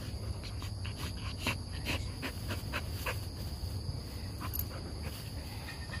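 Two golden retrievers, a puppy and an older dog, play-fighting on grass. Their mouthing and scuffling make scattered short clicks and rustles.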